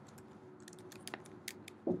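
Faint typing on a computer keyboard: a handful of light, separate keystroke clicks while a layer name is typed in.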